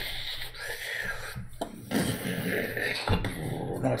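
Bristle brush scrubbing oil paint across a stretched canvas in a few back-and-forth strokes, each a short dry hiss with brief pauses between, and a soft thump near the end.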